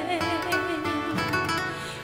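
Brazilian gospel song: a sung line trails off in the first moments, then a short instrumental passage with plucked-string accompaniment fills the gap between vocal phrases.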